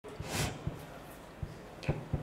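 Press-room background with a few dull, low knocks spaced irregularly and a brief rustling hiss near the start, the sounds of people moving among chairs and desks.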